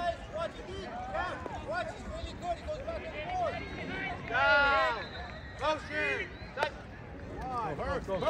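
Sideline voices: spectators and players calling out across the field, with one louder shout about halfway through. A single sharp click follows a couple of seconds later.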